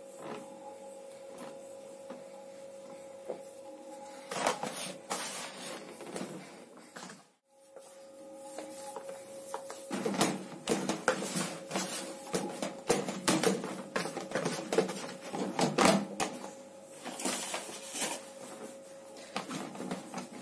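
Hands kneading soft, sticky chapati dough in a plastic basin: irregular squelching and knocking as the dough is pressed down and turned, more frequent in the second half. A steady hum runs underneath.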